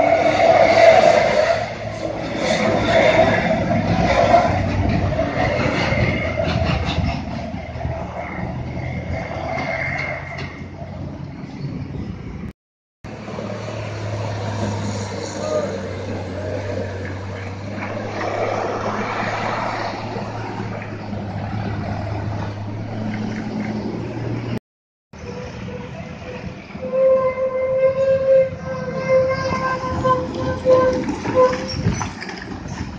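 Heavy diesel trucks, Isuzu Giga and Hino 500, labouring round a steep bend one after another, with motorbike engines passing in the first part. The middle part is a steady low engine drone. Near the end a steady pitched tone comes in over the engine. The sound cuts out briefly twice.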